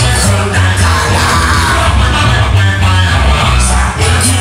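Loud live rock music: a man singing into the microphone over his own electric guitar.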